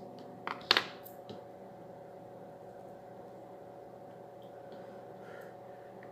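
A few short, sharp clicks and taps in the first second and a half, the loudest about three quarters of a second in, from handling an air rifle and a metal dart, over a steady low room hum.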